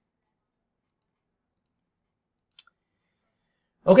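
Near silence, broken by a single faint computer mouse click a little past halfway.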